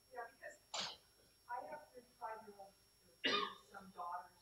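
Faint, distant speech from a person talking without a microphone, broken by two short noisy bursts, about a second in and near the end, the second being the loudest sound.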